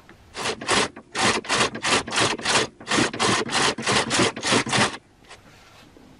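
Rapid back-and-forth rubbing or scraping strokes, about four a second, with two short pauses, stopping abruptly near the end.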